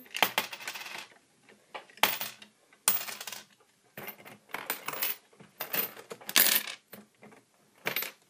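Coins clinking in a Lego coin pusher as they are fed in rapidly, one after another. Each comes as a short, sharp burst of metallic clinks, about a dozen irregular bursts with brief quiet gaps between.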